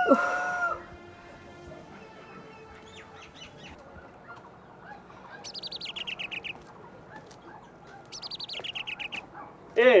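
A small songbird sings two short, rapid trills, each about a second long, a few seconds apart.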